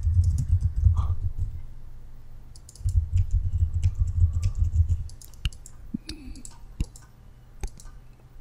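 Typing on a computer keyboard in two quick runs of keystrokes, then a few single key clicks spaced apart.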